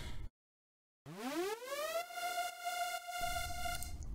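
A single Xfer Serum synth lead note with slight distortion: its pitch swoops up from low over about a second, then holds one steady tone for about two seconds before cutting off. The upward swoop is a pitch-envelope bend set on the patch's coarse pitch.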